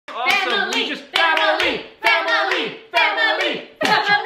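Several voices chanting together to hand claps: four short phrases, each about a second long, with claps falling several times in each phrase.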